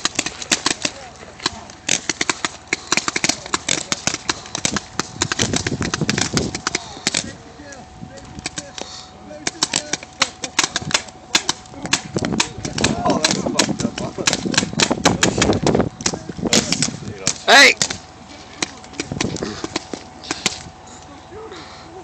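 Rifles firing in quick strings of shots and single cracks, from soldiers shooting at each other across a field, with a loud shout of "Hey!" near the end.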